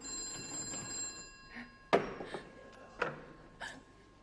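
Telephone bell rings once and fades over about a second and a half. A sharp click follows about two seconds in, then a couple of softer knocks.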